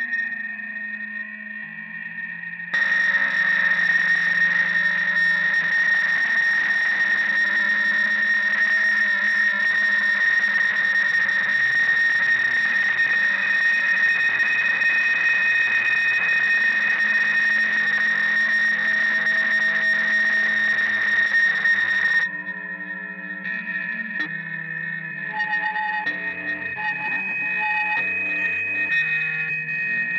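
Electric guitar run through distortion and effects pedals into an amplifier, making noise rather than notes. A dense distorted wash with a steady high whine starts about three seconds in and cuts off suddenly about twenty-two seconds in. Quieter, shifting distorted guitar tones follow.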